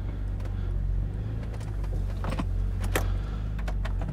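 BMW 125i E82 coupé's 3.0-litre naturally aspirated straight-six (N52B30) running low and steady as the car creeps forward at low speed, with a few light clicks.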